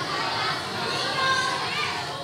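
A roomful of children talking to one another at once: many overlapping voices, with no single speaker standing out.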